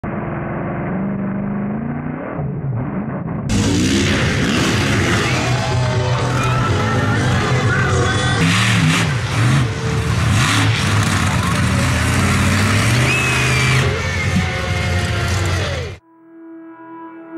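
Highlight-clip audio of motocross bike and monster truck engines revving, their pitch rising and falling, mixed with loud music. The sound changes abruptly about three and a half seconds in, where one clip cuts to the next.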